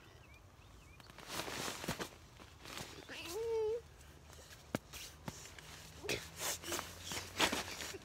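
Faint rustling and shuffling of movement on a tent floor and an inflatable sleeping pad. A short wavering, voice-like pitched sound comes a little over three seconds in, and a single sharp click near five seconds.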